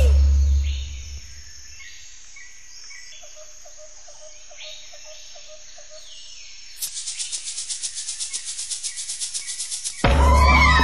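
Insect chirring in a cartoon soundtrack. A low tone fades out in the first second, giving way to a faint high hiss with a row of soft ticks. About seven seconds in, a louder high-pitched chirring starts suddenly, pulsing about eight times a second.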